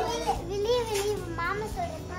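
A small child's high-pitched voice talking and calling out playfully, with other children playing close by.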